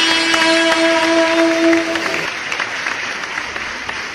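A live band holds its closing note for about two seconds, then the song gives way to audience applause.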